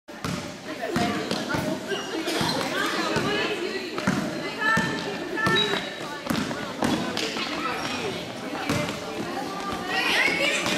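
A basketball being dribbled on a gym floor, bouncing again and again, amid players' footfalls and people's voices in a large hall.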